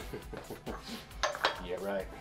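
A steel breaker bar and large socket clanking against the flywheel nut as they are worked, with a few sharp metallic clinks, the loudest about a second and a half in. A man laughs briefly at the start.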